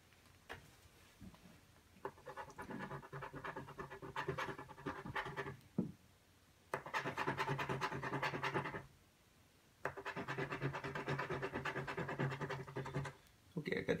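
A coin scratching the coating off a paper scratch lottery ticket on a table: rapid back-and-forth rasping strokes in three bouts, starting about two seconds in, near seven seconds and near ten seconds, with short pauses between.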